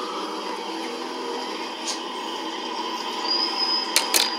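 Steady vehicle travel noise, an even rumble and hiss with no deep bass, as if played back through a small speaker. A thin high whine joins it near the end.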